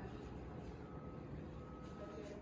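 Quiet room tone with a faint high beep sounding twice in the second half.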